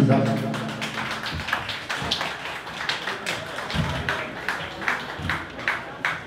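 Voices with a steady run of sharp taps, about three a second.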